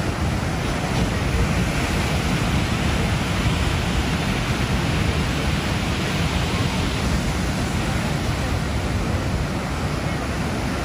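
Ocean surf breaking on a sandy beach: a steady wash of noise, with wind buffeting the microphone in a low rumble.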